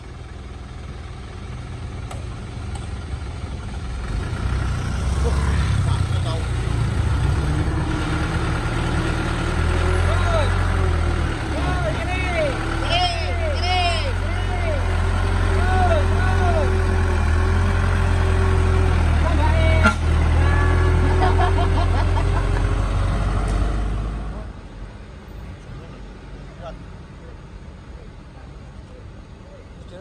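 A medium-size bus's diesel engine working hard as it pulls the bus off the soft roadside edge and back onto the road. It builds over the first few seconds to a loud, steady low drone, then drops away sharply near the end. People shout over it.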